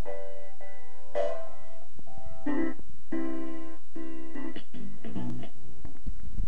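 A sampled instrumental record with piano-like notes, played back in slices by FL Studio's Fruity Slicer set to slice to the beat. The notes start and cut off abruptly with short gaps between the slices, so the playback sounds choppy.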